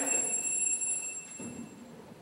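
A steady high-pitched whine of several tones held together, stopping just before the end.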